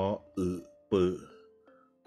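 A man's voice spelling out Thai syllables aloud: three short syllables about half a second apart in the first second. Soft background music plays underneath.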